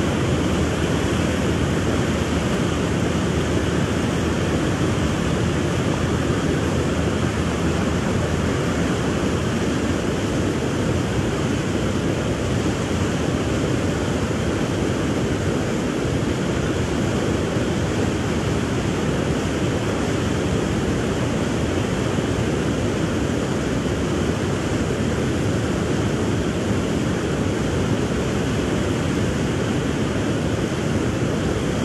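Loud, steady rush of churning river water with wind buffeting the microphone.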